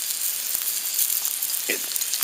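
Eggs and ham sizzling steadily in a metal frying pan on the embers of a wood fire.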